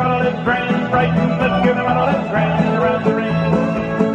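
Country-style square dance music with a steady beat and a bouncing bass line.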